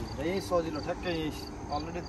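Insects chirping in a quick, evenly repeating high pulse, with a person's voice over it.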